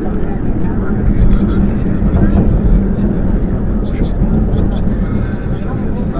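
A loud, steady rumbling noise with indistinct voices mixed into it.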